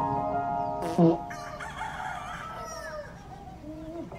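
A rooster crowing in a film teaser's soundtrack, after a held music chord that ends in a sharp hit about a second in.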